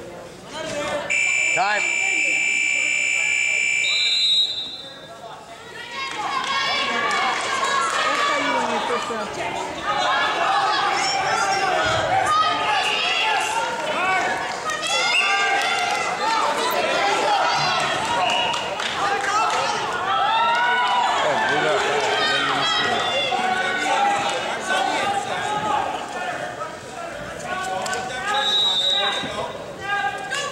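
Scoreboard timer buzzer sounding for about three seconds about a second in, as the 30 seconds put on the clock run out, followed by a short higher beep. Many voices then talk across a large hall, with another short beep near the end.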